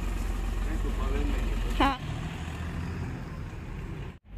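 A small hatchback's engine runs with a steady low hum for about two seconds, then grows quieter as the car pulls away and drives off. A brief word is spoken just before it moves off.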